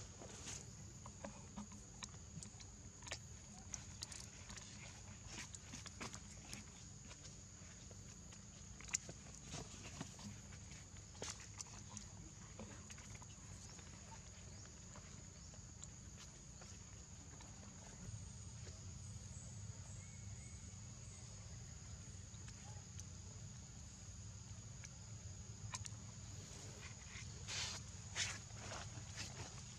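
Faint outdoor ambience: a steady high-pitched hum over a low rumble, with scattered small clicks and rustles and a brief cluster of louder ones near the end.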